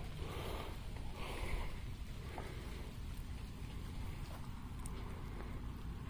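Steady low rumble of rain and wind outdoors, heard through a covered camera microphone, with a couple of faint ticks.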